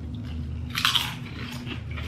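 Two people biting into and chewing kettle-style potato chips, with one loud crunch about a second in and a few softer crunches after it.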